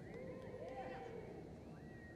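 Spectators whooping and hollering to cheer on a reining run: several overlapping voices with long rising and falling calls, faint over a low arena rumble.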